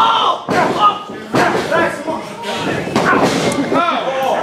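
Shouted voices from people at ringside, with a few sharp thuds on the wrestling ring's mat, one about half a second in and another about a second and a half in.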